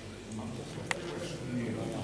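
Indistinct talk from several people in the background, with one sharp click about a second in.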